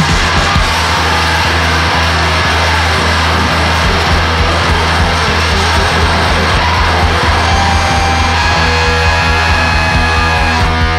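Heavy blues-rock band music with a steady low bass drone under a dense, continuous mix. Held high notes come in near the end.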